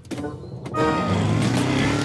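Cartoon quad bike engine sound effect: a sharp click, then the engine starts about a second in and runs loudly and steadily, with music underneath.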